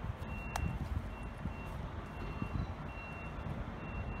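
A vehicle's reversing beeper sounding a repeated high-pitched beep, roughly once a second, over a low rumbling background noise.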